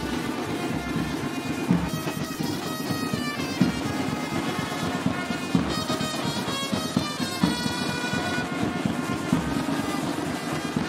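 Marching band playing: a bass drum and side drums beating a fast, steady rhythm under trumpets playing a melody.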